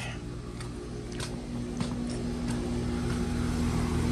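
Outdoor air-conditioning condensing unit running: a steady compressor and fan hum that grows louder as it is approached, with a few light footsteps on stone pavers. The unit is running and not frozen up.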